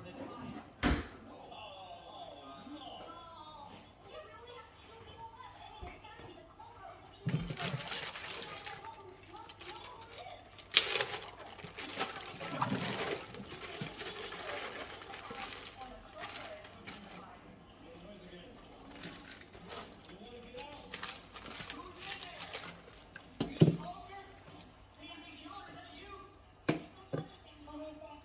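Plastic zip-top freezer bags crinkling in bursts as they are handled and opened, with a few sharp knocks of meat packages against a stainless steel sink.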